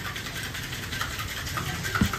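Metal cocktail shaker being shaken by hand, its contents rattling in quick succession over a steady low rumble, with a sharper knock right at the end.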